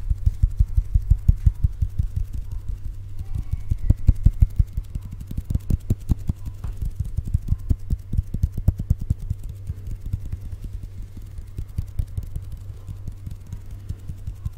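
Hands fluttering and waving right at a Blue Yeti microphone, making rapid, irregular soft low thumps as the air they push hits the capsule, over a steady low hum. The thumps come thick for the first several seconds, then thin out and grow softer.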